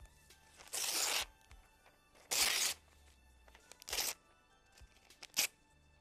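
Glossy magazine paper being torn by hand, four separate rips: two of about half a second, then two shorter ones.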